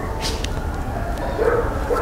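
A dog making a brief, faint vocal sound about a second and a half in, over a low, steady rumble.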